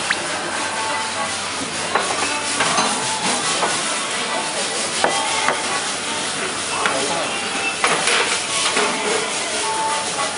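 Restaurant room noise: a steady hiss with scattered light clicks and knocks of tableware and faint distant voices.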